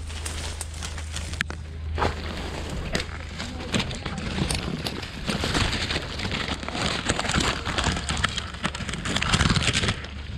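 Leaves and twigs rustling and scraping against a dog-mounted GoPro as the dog pushes through dense undergrowth. The sound grows louder and more crackly from about four seconds in. A low hum stops about two seconds in.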